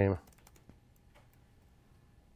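A spoken word ends right at the start, then a few faint keystrokes on a computer keyboard, short clicks at irregular spacing, as a word is typed.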